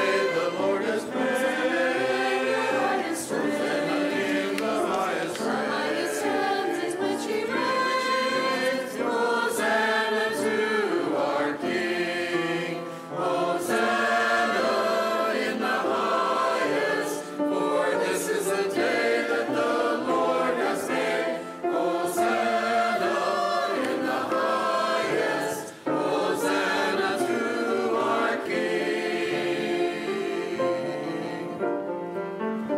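A group of voices singing a sacred piece together, in sung phrases with short breaks between them.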